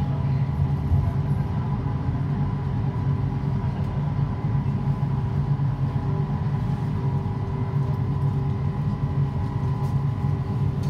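Kelana Jaya line driverless LRT train, a linear-induction-motor car, heard from inside at the front as it pulls out of a station and runs along the elevated track. A steady running rumble is overlaid with a steady electric whine.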